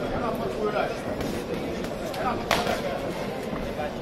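Indistinct shouting and calls from people around a kickboxing ring, over the hum of a large hall, with one sharp smack about two and a half seconds in.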